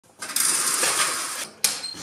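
Vertical window blinds swept aside, the slats rattling and swishing for over a second, then a single sharp click with a brief metallic ring.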